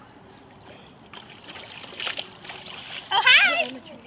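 A swimmer splashing in pool water, with a few sharper splashes about two seconds in. Near the end a high-pitched voice calls out with a wavering pitch, louder than the splashing.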